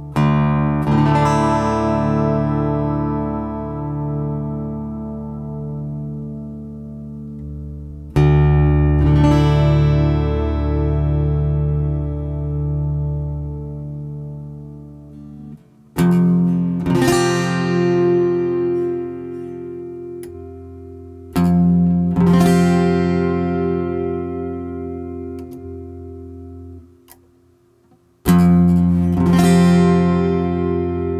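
Godin Multiac Steel Duet Ambiance steel-string electro-acoustic guitar, plugged in, strumming five chords about five to eight seconds apart and letting each ring out and slowly fade.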